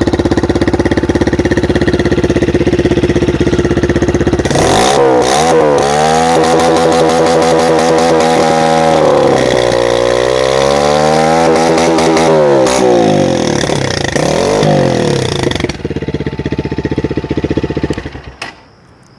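Gladiator 200cc GP-2 motorcycle engine heard at its under-seat exhaust: idling, then revved several times from about four seconds in, the pitch climbing, held high and falling away, with a short blip after. It settles back to idle and cuts off at the very end; the exhaust note is a bit loud.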